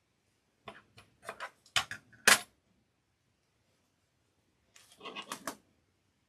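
Beads and small metal tools being handled, giving a run of sharp clicks and clacks from about a second in, the loudest a little past two seconds, then a second shorter run near the end.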